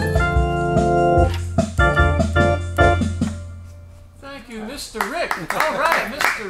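Hammond Colonnade organ playing the closing chords of a tune over a held bass note; the playing stops about three seconds in and the last chord dies away.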